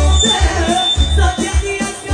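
Live Albanian folk dance music: electronic keyboard and clarinet playing a wavering, ornamented melody over a heavy, loud bass beat.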